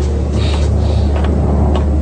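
Steady low rumble of aircraft engines on a cartoon soundtrack, with a brief scuffing noise about half a second in.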